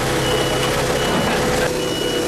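A high electronic beep repeating about every two-thirds of a second, like a vehicle's backup alarm, over the steady hum of a running engine at a truck-crash rescue.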